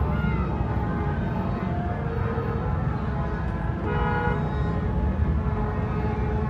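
Vehicle horns honking in slow, crowded street traffic, with one strong, long toot about four seconds in, over the steady low rumble of engines heard from inside a car.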